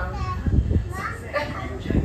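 A small child's voice, wordless babble and short vocal sounds about a second in, over a low rumble with a dull low thump about half a second in.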